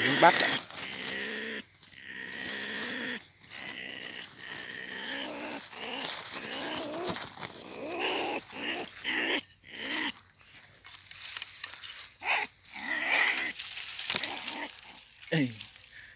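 A ferret-badger caught in a snare, growling and crying in repeated wavering calls that rise and fall in pitch as it struggles.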